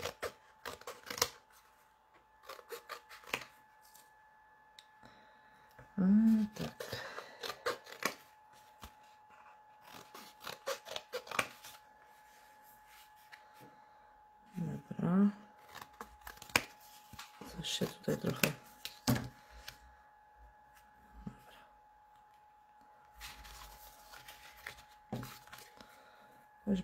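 Scissors snipping cardstock, with paper rustled and handled in a series of short clicks and rustles; a faint steady tone sounds underneath.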